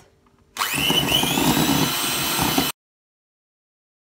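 Electric hand mixer switched on about half a second in, its motor whine rising as it speeds up, then running steadily with its beaters whisking chickpea water and sugar in a glass bowl. The sound cuts off suddenly after about two seconds.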